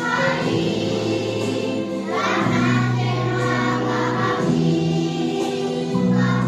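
A group of children singing together over recorded backing music, with steady held bass notes beneath the voices.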